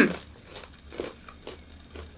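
Crunchy caramel-coated candied peanuts (mantola) being chewed with the mouth closed: a few faint, short crunches about a second in.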